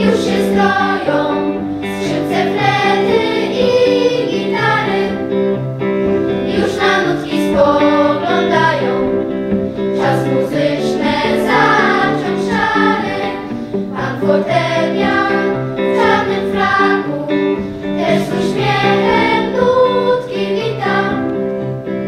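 Children's choir singing under a conductor.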